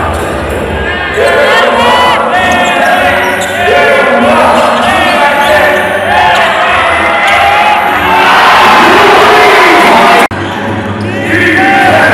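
A basketball bouncing on the court as players dribble, under loud arena music with singing and crowd noise. The sound drops out for an instant about ten seconds in.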